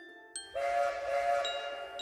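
Cartoon steam-train whistle with a hiss of steam, starting about half a second in and sounding for over a second, over light glockenspiel music.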